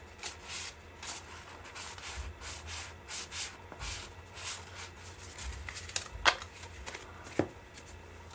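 Cardboard baseball cards slid one by one off the top of a hand-held stack, card rubbing on card in a series of short swishes, with two sharper snaps near the end.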